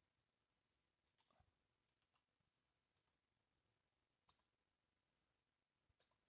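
Near silence with a few faint, sharp computer keyboard and mouse clicks, the loudest a little past four seconds in.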